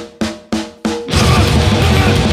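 Grindcore band starting a song: four sharp hits of drums and a ringing guitar chord, about a third of a second apart, then about a second in the full band comes in loud and dense with distorted guitars and fast drumming.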